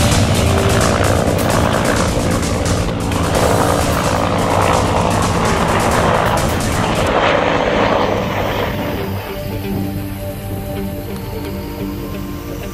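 Music, full and dense at first, thinning to a few held notes over the last few seconds.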